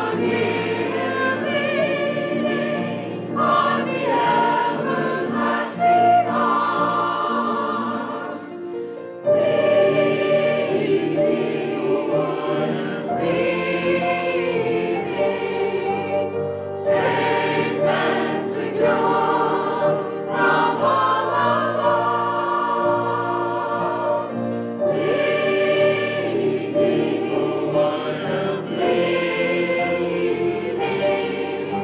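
Church choir of mixed men's and women's voices singing an anthem in parts, easing off shortly before nine seconds in and coming back in louder just after.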